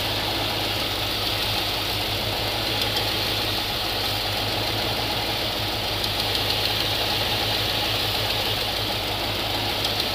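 Chevrolet 454 big-block V8 idling with the valve cover off, its valvetrain ticking in the open. A rocker arm is being adjusted with the engine running: its adjuster is tightened until that rocker's tick goes away, to set the hydraulic lifter's preload.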